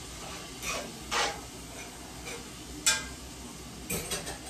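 Ground beef sizzling in a frying pan while being stirred and broken up, the utensil scraping against the pan a few times, with a sharp clink about three seconds in.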